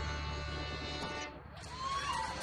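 Fiddle, acoustic guitars and upright bass end a tune: the final chord rings on and fades over about a second and a half. Applause starts up near the end.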